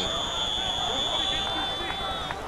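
A referee's whistle blown in one long, steady, shrill blast of about two seconds, with faint crowd noise underneath.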